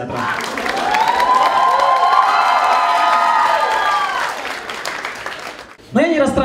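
Audience applauding, with many voices from the crowd rising over the clapping in the middle, then dying away near the end.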